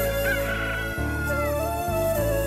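A rooster crowing once, its call dropping in pitch at the end, over soft background music.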